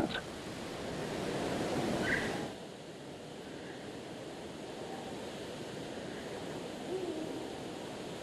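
Quiet outdoor ambience: a soft steady hiss, a little louder for the first two and a half seconds, with a short high chirp about two seconds in and a brief low hoot-like call about seven seconds in.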